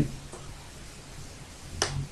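Quiet room tone with a low steady hum, and one faint sharp click about a third of a second in, from the computer being typed on.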